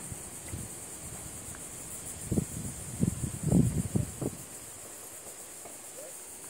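Steady high-pitched insect chorus in the background, with a cluster of short low thumps between about two and four seconds in.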